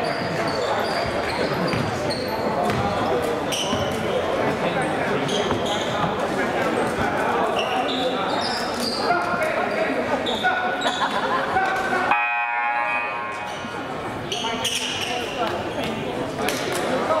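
Echoing gym noise during a basketball game: sneakers squeaking on the hardwood, a basketball bouncing, and voices from players and spectators. About twelve seconds in, a brief buzzing tone sounds.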